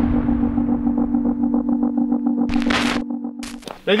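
Logo-sting sound design: a deep boom fading away under a steady electronic hum. Near the end come two short hissing bursts of glitch noise, and the hum cuts off.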